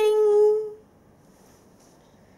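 A woman singing a short, high 'ba-ding!' of triumph: one held note that stops under a second in, followed by faint room tone.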